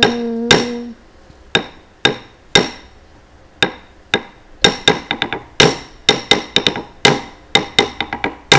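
Wooden stick struck on a wooden block (thattu palagai), beating out the dance rhythm. The strikes are sharp and ringing, a few apart at first and then coming quickly in clusters. A sung note is held at the start and ends about a second in.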